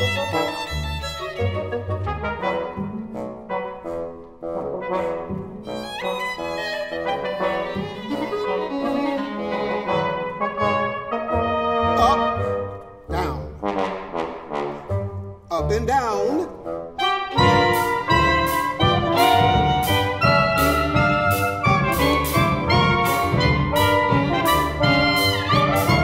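Live chamber ensemble of violin, double bass, clarinet, bassoon, trumpet, trombone and drums playing a jazz-inflected score, with trumpet and trombone prominent. Sliding notes come just before a steady drum beat enters about seventeen seconds in, and the band plays a little louder from there.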